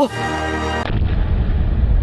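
Cartoon sound effect of a time bomb exploding: a short pitched sound, then about a second in a deep, sustained rumbling blast.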